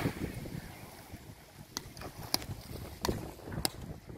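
Beach paddleball rally: a small ball struck back and forth with hard paddles, four sharp clacks with a short ring, about two-thirds of a second apart, starting a little under two seconds in. Low wind rumble on the microphone runs underneath.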